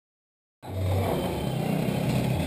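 Vespa scooter engine running steadily, out of sight, starting suddenly about half a second in after silence.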